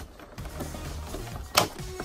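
Soft background music with a single sharp plastic click or crackle about one and a half seconds in, as a clear plastic blister tray is handled.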